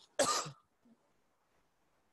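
A man's single short cough, about a quarter second in, from someone with a fresh cold and cough.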